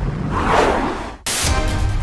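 A swelling whoosh sound effect over intro-style music, cut off sharply about a second and a quarter in, where a new music track with a steady beat starts.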